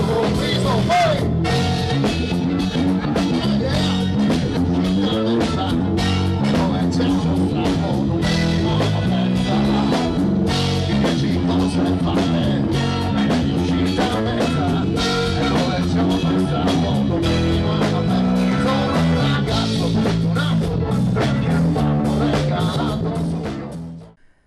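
Live rock band playing: a man singing into a handheld microphone over electric guitar and drums. The music fades out near the end.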